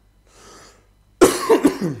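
A man coughing: a run of several quick coughs starting just past a second in. He puts the cough down to the dry winter cold.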